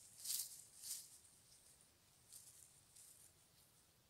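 Faint rustling and scraping of gloved hands in forest grass and moss while picking chanterelle mushrooms: two soft rustles in the first second, then a few quieter ones.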